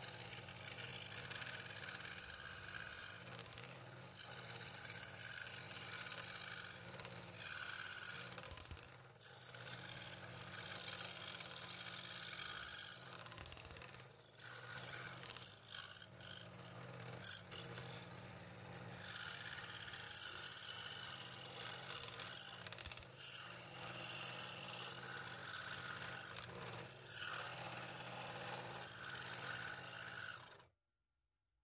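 Scroll saw running with a number 5 blade cutting through 3/8-inch walnut: a steady low motor hum under a rasping cutting sound that rises and falls as the wood is fed into the blade.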